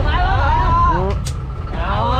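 A small river tour boat's engine running with a steady low rumble, under talking voices.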